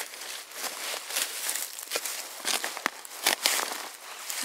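Footsteps crunching and rustling in dry fallen leaves and twigs on a forest floor, with several sharp cracks in the second half.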